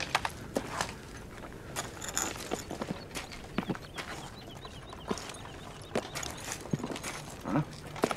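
Foley movement sounds: irregular short clicks, knocks and scuffs of soldiers' boots, kit and rifle as they crouch and shift.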